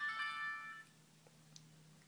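Mobile-i F1000 dash cam's power-on chime from its small built-in speaker: a short electronic jingle of several tones, under a second long, marking the unit booting up.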